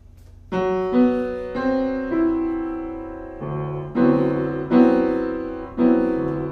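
Piano playing a four-part closed D7(9) voicing with a B (the 13th) substituted in, which puts a half-step rub into the chord. The notes come in one after another about half a second apart, then the whole chord is struck again three or four times and left to ring.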